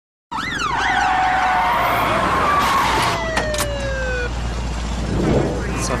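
Emergency vehicle siren sounding over a steady background rumble: a quick sweep up and down in pitch, then held tones that slide down in pitch and stop a little past four seconds in. Voices start shortly before the end.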